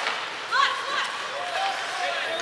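Indoor ice hockey rink during play: short shouted calls from voices on or around the ice, two of them about a second apart, over rink noise with light clicks of sticks and skates on the ice.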